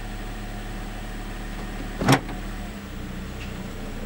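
Steady low hum of a Toyota Corolla idling, heard from inside the cabin, with one short sharp clunk about two seconds in.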